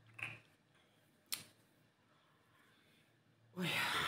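A pause in a woman's talk. There is a brief vocal sound from her at the start and a single sharp click a little over a second in, then near silence until she says 'ой' near the end.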